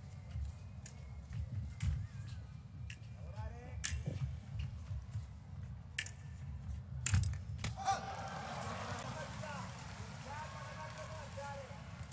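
Foil bout in an arena: sharp clicks and knocks of blades and footwork on the piste over a low crowd rumble, then from about eight seconds in a drawn-out, wavering shout as the touch is scored.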